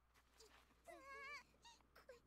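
Faint, high-pitched girl's voice from the anime soundtrack: one short wavering utterance about a second in, then a few brief sounds near the end.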